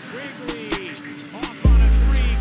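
Background music with a regular ticking hi-hat, and a deep, loud bass note coming in near the end.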